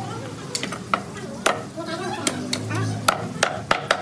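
A butcher's cleaver chopping a goat leg on a wooden log chopping block: about nine sharp chops, coming faster near the end.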